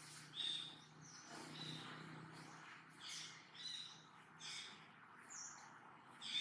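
Birds chirping: faint, short, high calls repeated about once a second, over a faint low hum.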